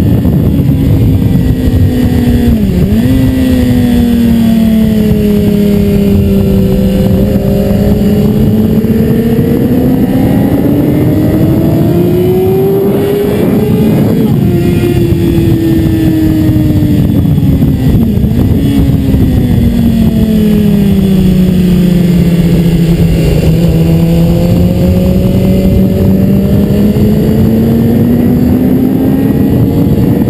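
BMW S 1000 RR's inline-four engine running at speed on track, its pitch climbing as the bike accelerates and sinking as it slows, with a sudden drop in pitch about 14 seconds in at a gear change. A constant rush of wind noise runs under it.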